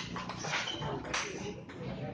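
Table tennis ball clicking sharply off the paddles and table a few times as a rally ends, over a low murmur of voices in the hall.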